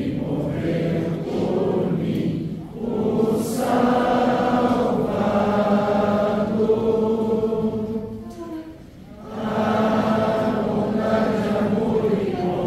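A congregation singing a hymn together in long, held lines, with a brief breath between lines about three seconds in and a longer pause about two-thirds of the way through.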